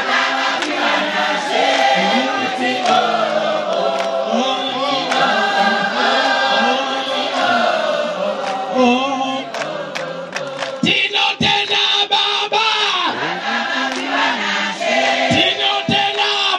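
A large choir of women singing together, many voices holding and moving between notes. A few sharp clicks sound in the second half.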